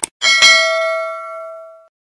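Mouse-click sound effect, a quick double click, followed by a notification-bell ding struck twice in quick succession and ringing out with several clear tones that fade over about a second and a half.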